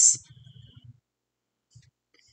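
The tail of a spoken word, then near silence.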